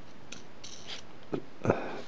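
A small nut being spun by hand onto a 6-32 machine screw, giving faint scraping of the threads and a few small clicks.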